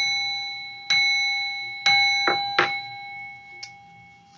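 A small metal bell struck three times, about a second apart, each strike ringing on in a steady, slowly fading tone, with a couple of lighter knocks after the third.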